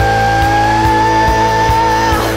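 Hard rock band playing an instrumental passage: one long, slightly rising lead note is held over steady drums and bass.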